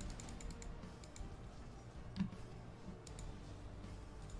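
Faint, scattered clicks and ticks, with a soft thump about two seconds in, over quiet background music.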